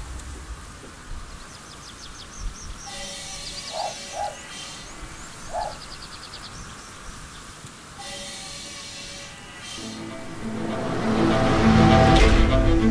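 Small birds chirping in short quick phrases over quiet outdoor ambience, then music with sustained string-like notes swells in over the last two seconds and grows louder.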